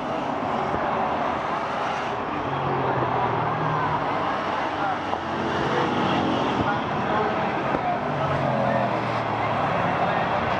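Bomber-class stock car engines running around the oval, their drone swelling and fading every few seconds as cars pass, under a steady murmur of crowd voices.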